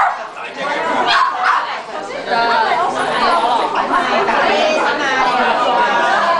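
Several people chattering at once, their voices overlapping.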